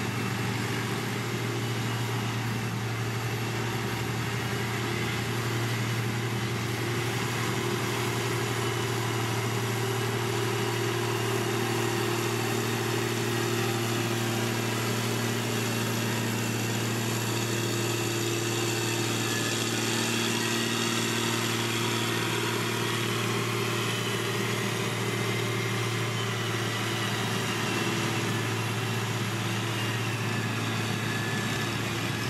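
Dresser motor grader's diesel engine running steadily at an even low pitch while its blade spreads dirt.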